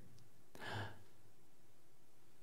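A single short breath from a man, heard about half a second in, against faint room tone.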